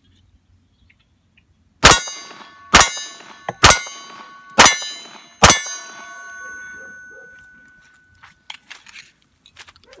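Five shots from a Ruger SR1911 .45 ACP pistol, about a second apart, each followed by the ringing of an AR500 steel target, which fades out a couple of seconds after the last shot. The handloaded rounds all fire normally.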